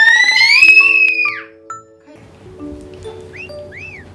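A young child's long, shrill shriek, rising in pitch for about a second and a half. Light background music follows, with two short whistle-like sound-effect glides near the end.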